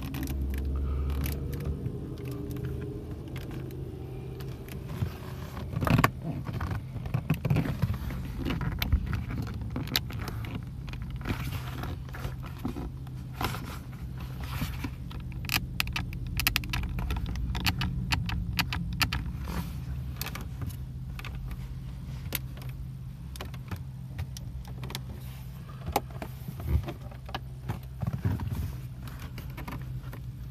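Hands pressing, tapping and knocking on a Mercedes-Benz CLS550's door trim, wood panels and switchgear, making many short sharp clicks and taps as the trim is checked for creaks and rattles. A steady low hum runs underneath.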